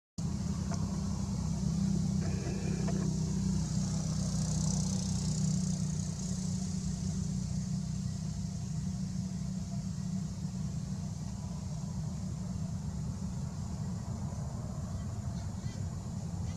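A motor running steadily, making a low even hum, with a high hiss that swells and fades a few seconds in.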